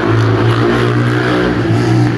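Small motorcycle with a noisy fitted exhaust running loud close by, a steady engine drone.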